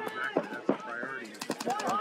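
Commentators' voices over a string of short, sharp pops from paintball markers firing on the field, loudest through the middle.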